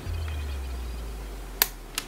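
Hand wire cutters snipping through an insulated electrical wire: one sharp snip about one and a half seconds in, and a smaller click just before the end.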